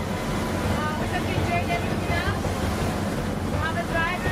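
Steady rumble of a boat under way, with water rushing past and wind buffeting the microphone; indistinct voices in the background.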